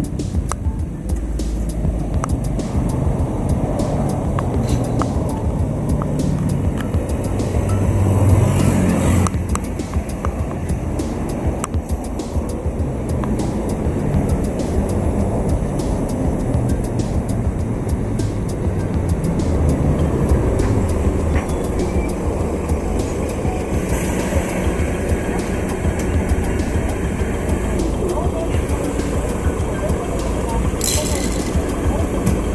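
City street traffic: a steady low engine rumble of passing road vehicles, with one passing loudest about eight seconds in and another swell around twenty seconds.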